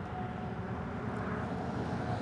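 Steady low background rumble with no distinct event, the ambient noise of an open-air motorway service area.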